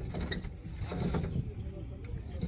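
Solar panels and their metal frames being handled and loaded onto a pickup truck: scattered clicks, knocks and rattles of metal against metal.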